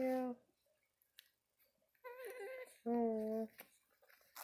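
A woman's voice making short wordless hums, three of them, with a near-silent gap broken by a couple of faint clicks.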